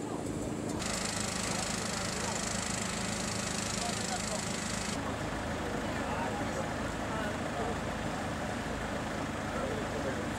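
Indistinct voices talking at a distance over the steady low running of a vehicle engine, with a band of hiss from about a second in until about five seconds in.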